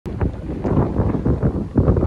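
Wind buffeting the microphone, an uneven gusty rumble.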